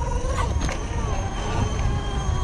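Sur Ron electric dirt bike's motor and drivetrain giving a steady whine while rolling along, over wind rumble on the microphone.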